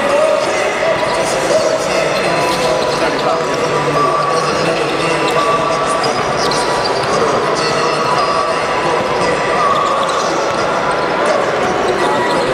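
Basketball bouncing on a hardwood gym floor, with the steady murmur of voices in a large hall.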